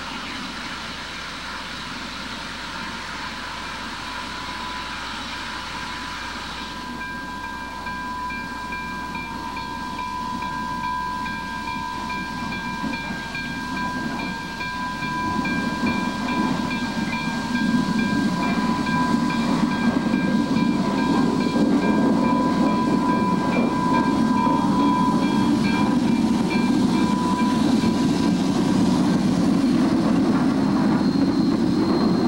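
Double-headed Lima-built Berkshire steam locomotives on the curved balloon track: a steady high-pitched squeal, typical of wheel flanges grinding on a tight curve, starts about seven seconds in and holds for some twenty seconds. The locomotives' low rumble grows much louder from about halfway as they draw near.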